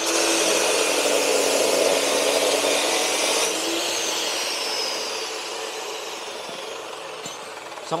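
Abrasive cut-off saw (chop saw) cutting through steel, a loud grinding over the steady hum of the motor. About three and a half seconds in, the motor's note drops and the sound slowly fades as the disc winds down.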